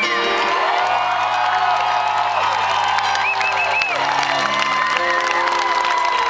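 Grand piano playing slow held chords, changing chord about a second in and again near four seconds, with the audience cheering and whooping over it.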